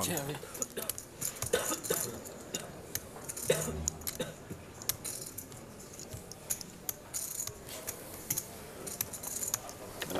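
Poker chips clicking and clacking at a tournament table: many short, irregular clicks, as players handle and riffle their chips.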